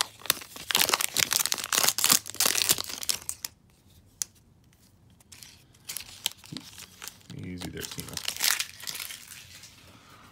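A Topps baseball card pack's wrapper being torn open and crinkled by hand, with dense crackling for the first few seconds. After a quieter stretch there is a brief murmur, and more crinkling comes near the end.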